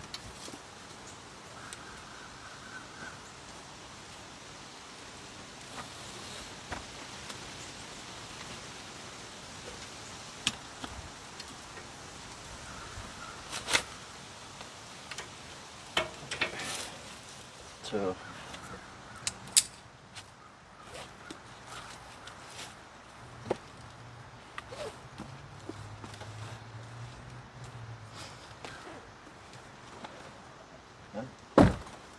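Scattered clicks, knocks and clanks of a homemade welded metal hunting platform and its buckle strap being fastened to a tree trunk and then stepped onto, over a steady outdoor hiss.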